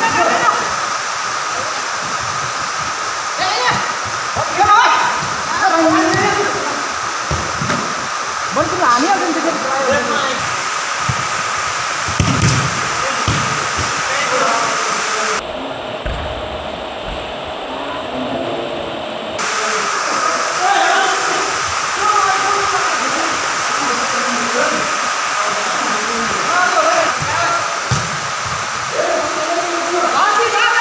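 Players' voices shouting and calling in short bursts during a futsal match, over a steady hiss and a constant high hum.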